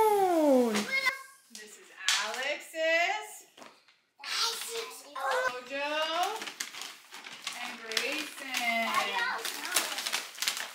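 Young children's excited high-pitched voices and exclamations, with rustling and crinkling of brown paper gift bags being opened from about halfway through.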